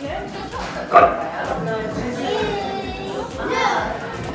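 Indistinct voices and chatter in a busy room, broken by one short, sharp, loud yelp about a second in.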